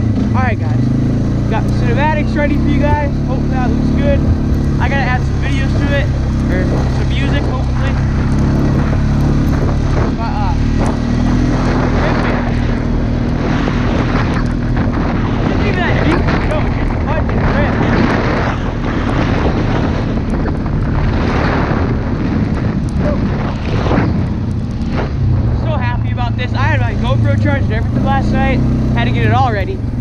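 ATV (four-wheeler) engine running as it is ridden, its pitch shifting with the throttle. Through the middle stretch, wind rushes over the helmet-mounted microphone.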